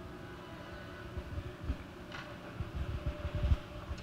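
A quiet hall with a steady low hum, broken by scattered soft, low thumps and bumps that cluster in the second half, and a brief faint rustle about two seconds in.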